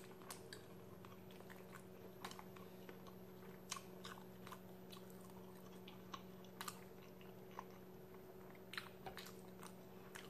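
Near silence with faint close-up chewing: scattered soft mouth clicks a few times, over a faint steady low hum.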